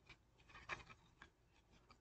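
Near silence, with a few faint scratchy rustles of a cardboard button card being handled.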